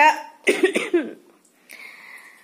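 A woman coughs, a short rough burst about half a second in. A faint, steady hiss follows near the end.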